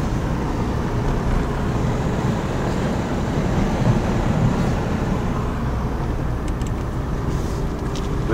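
Steady low rumble of a car on the move, heard from inside: engine and road noise running evenly with no change.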